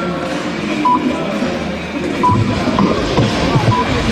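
Electronic dartboard machine giving a few short, even beeps as its menu buttons are pressed to set up the next game, over background music and hall noise.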